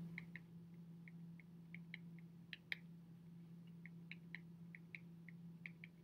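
Faint, irregular ticks of a stylus tapping and stroking on a tablet's glass screen during handwriting, over a steady low hum.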